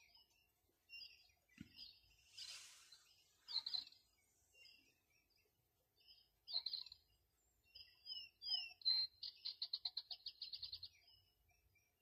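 Birds chirping faintly in the background: scattered short chirps and a few sliding whistled notes, then a rapid trill of repeated notes near the end.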